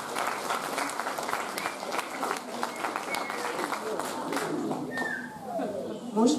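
Audience applauding, a dense patter of many hands clapping that thins out near the end, with a few voices in the hall.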